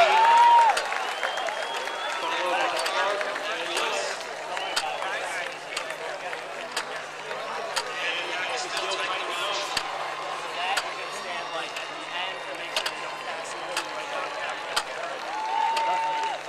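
Stadium crowd murmuring, with many overlapping voices and scattered hand claps; the loudest voices come in the first second.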